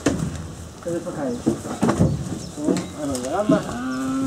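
Men's voices calling to coax cattle, with a few sharp knocks of hooves on the metal loading ramp of a livestock trailer.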